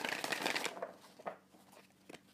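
Tarot cards and their pouch handled by hand: a dry rustle of cards and fabric that fades within about a second, then a faint tap.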